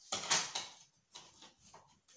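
Short scrapes and clicks of hands handling a wall outlet and its parts. The loudest scrape comes about a third of a second in, followed by a few smaller clicks.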